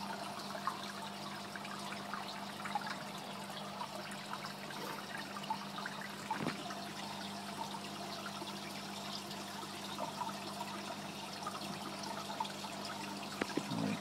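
Aquarium water trickling and bubbling steadily, with many small crackles, over a low steady hum from the tank's equipment.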